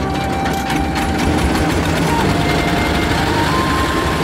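Small inboard engine of a wooden passenger boat running with a fast, even clatter.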